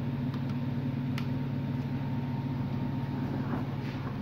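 Steady low machine hum with a few faint, light clicks in the first second or so as a flat ribbon cable is handled at its board connector.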